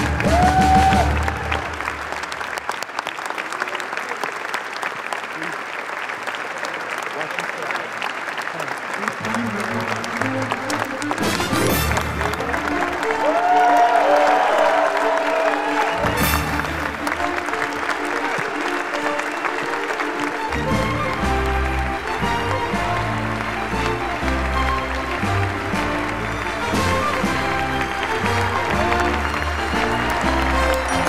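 A large theatre audience applauding steadily over music played through the hall, with voices calling out above the clapping about a second in and again about fourteen seconds in. The music's bass grows heavier from about twenty seconds in.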